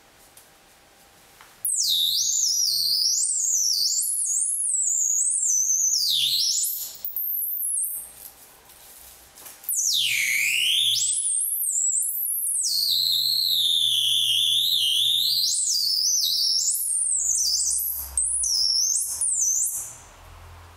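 Electronic sound from an interactive sound installation: high synthesized tones that glide up and down, with low tones underneath. They start about two seconds in, drop away around seven seconds and return near ten seconds.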